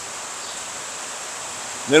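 A pause in a man's talk: a steady background hiss with a faint high whine, no distinct event. His voice starts again at the very end.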